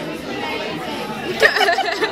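Chatter of many voices in a crowded room, with one nearer voice rising above it about a second and a half in.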